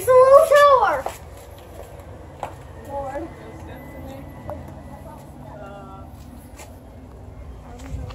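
A young child's loud, high-pitched vocal call lasting about a second at the start, its pitch rising and then falling, followed by a few faint, short voice sounds over a low steady background hum.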